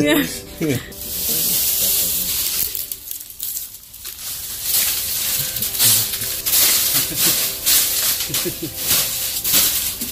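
A hissing noise with scattered clicks, in two stretches: about a second in and again from the middle on. Faint voices are heard under the later stretch.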